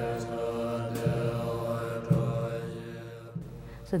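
Background music with a low chanted drone of held tones, fading out about three and a half seconds in.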